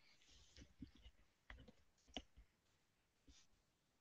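Near silence over a video-call line, broken by a handful of faint, short clicks, the clearest a little past two seconds in.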